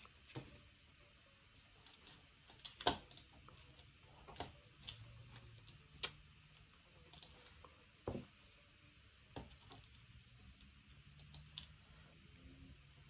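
Faint, scattered clicks and taps of paper embellishments and small tools being handled on a tabletop, about a dozen in all, irregularly spaced.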